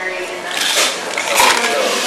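Mostly speech, with handling noise from a coffee bag being set down and a paper cup being shifted on a digital scale.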